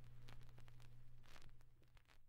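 Faint surface noise of an old record between tracks: a steady low hum with scattered clicks and crackle, fading toward the end.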